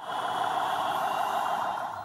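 Busy city street traffic noise, steady and unbroken, with vehicle engines running.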